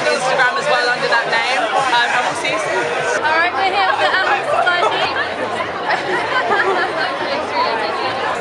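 Speech and crowd chatter: several voices talking at once. The sound changes abruptly about three seconds in.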